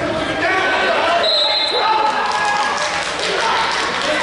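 Several voices shouting at once in a large, echoing gymnasium during a wrestling bout, with thumps on the floor or mat.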